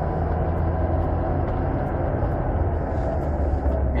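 Car engine running at low revs, heard from inside the cabin while driving, with a low steady hum whose tone shifts slightly about halfway through. The engine runs rough and keeps nearly stalling, which the driver blames on poor-quality 80-octane petrol.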